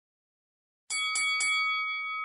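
Silence, then about a second in a bell-like chime struck three times in quick succession, its ringing tone carrying on and slowly fading: an intro sound effect under the channel logo.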